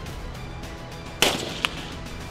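A single loud gunshot a little over a second in, followed about half a second later by a shorter, fainter sharp crack, over background music.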